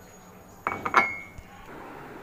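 Ceramic tea cup being set down on a hard counter: two clinks about a third of a second apart, the second louder with a short ring.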